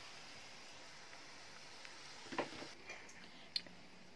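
Faint, steady sizzle of a sweet-potato pastry deep-frying in a pan of oil, with a few small clicks in the second half.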